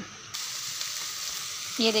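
Chicken masala sizzling in a karahi as it fries down at the bhuna stage, its water cooked off and nearly done. It is a steady hiss that starts abruptly just after the start.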